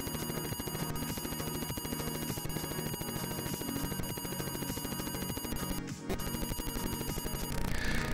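Atari 8-bit computer's SIO loading noise through the TV speaker as it boots SpartaDOS from the FujiNet: a steady electronic buzzing chatter of changing tones that breaks off briefly about six seconds in and ends just before the DOS prompt appears.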